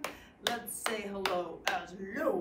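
A person's hands clapping and patting a steady beat, four strokes about 0.4 s apart, keeping time under a woman chanting a children's rhyme.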